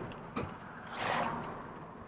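Van cabin noise on the move: a steady low engine and road hum, with a single click about half a second in and a brief soft hiss about a second in.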